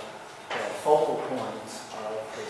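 A man speaking into a handheld microphone, his voice starting about half a second in.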